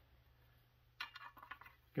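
Near silence for about a second, then a few light metallic clicks and taps as a saw set is handled and fitted onto the teeth of a handsaw blade.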